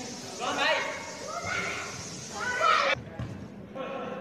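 Players shouting to one another across an echoing indoor futsal hall, with two louder calls. The sound cuts off abruptly about three seconds in.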